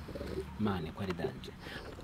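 A dove cooing, with soft low voices under it.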